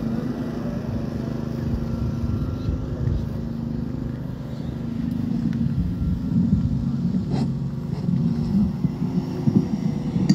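Low, steady rumbling noise with a faint steady hum under it, and a few faint clicks.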